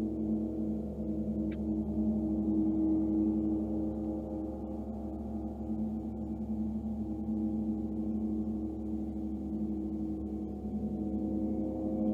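Large gongs played for a sound bath: a sustained, shimmering drone of several layered tones that pulse and waver, swelling again near the end.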